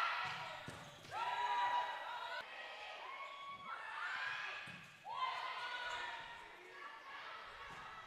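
A volleyball rally in an echoing gym: the ball is struck, and players' drawn-out calls come about one, three and five seconds in.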